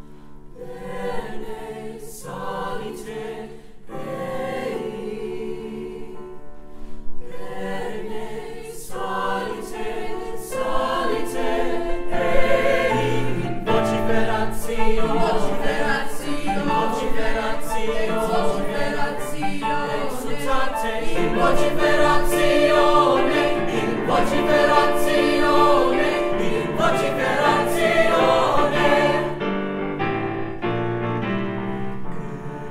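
A mixed-voice choir singing, building louder over the first dozen seconds and staying full to the end.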